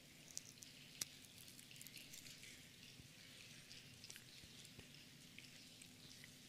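Many people opening the sealed second layer of prepackaged communion cups: faint, scattered crackles and ticks that together sound like a spring rain, with one sharper click about a second in.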